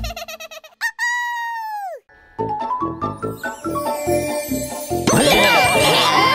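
Cartoon music and sound effects. A quick tinkling trill, then a held tone that slides down in pitch and cuts off about two seconds in. After a brief gap comes bright children's music with chiming notes, joined about five seconds in by a busy flurry of chirping, warbling squeaks.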